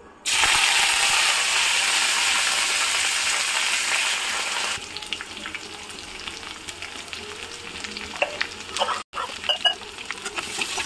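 Oil frying in a kadai: a loud, even sizzle that starts suddenly just after the start, dropping after about five seconds to a quieter crackling fry of sliced onions, with scattered sharp clicks near the end.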